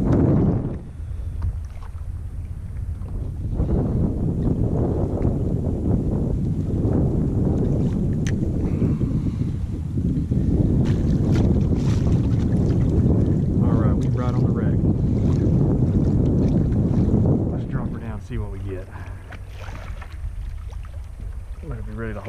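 Wind rumbling on the camera microphone over water splashing along a kayak hull as the kayak moves through open sea, easing off near the end.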